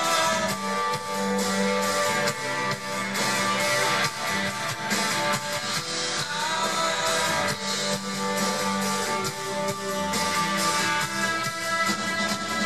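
A live rock band playing through a stretch without lyrics: strummed acoustic guitar, electric guitar, electric bass and drum kit, with long held notes ringing over the band.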